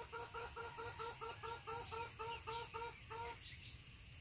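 A bird calling faintly: a fast, even run of short repeated notes, about five a second, that stops a little over three seconds in.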